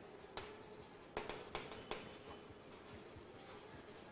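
Chalk writing on a blackboard: faint scratching strokes with a few sharper taps in the first two seconds.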